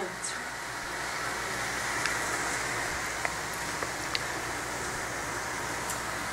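Steady, even hiss of background noise with a few faint clicks.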